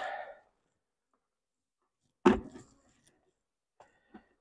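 A single short knock a little over two seconds in, otherwise almost nothing heard.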